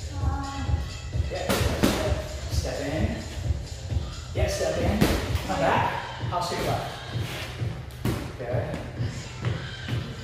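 Kicks and punches landing on a freestanding heavy punching bag: about half a dozen sharp thuds at uneven intervals, over background music with a steady beat.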